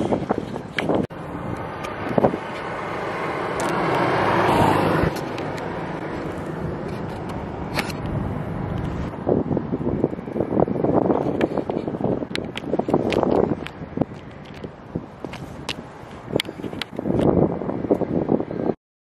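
Wind buffeting the microphone on an open airport ramp, coming in irregular gusts with scattered handling knocks. In the first five seconds a rush of noise builds steadily and then cuts off abruptly.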